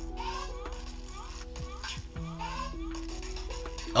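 Quiet background music from a promo video's soundtrack: held notes that step to a new pitch every half second or so over a steady low bass.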